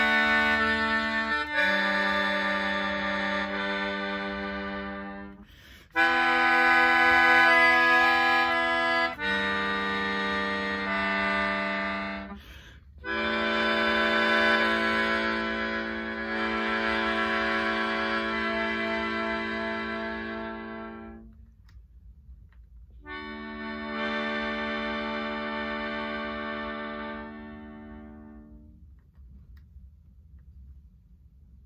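Keyboard melodica, blown through a long flexible mouthpiece tube, playing slow held chords in four phrases with short gaps between them; the last phrase fades out shortly before the end.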